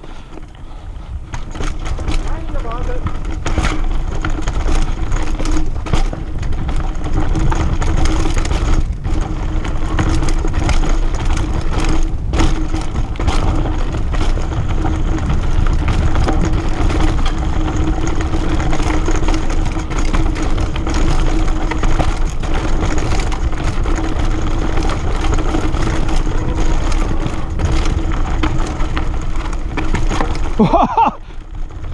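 Mountain bike riding fast down a dirt and rock forest trail, heard from a camera on the bike: loud rushing wind on the microphone with rattles and knocks from the bike over roots and rocks. It builds up over the first few seconds as speed picks up, with a steady tone held underneath.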